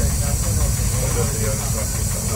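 Y1-class diesel railcar's engine running with a steady low drone while the railcar is under way, heard from the front of the car beneath a man's voice.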